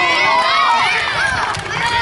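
A group of children shouting and cheering at once, many high-pitched voices overlapping.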